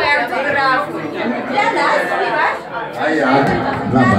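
Several people talking over one another close by: loud, overlapping crowd chatter.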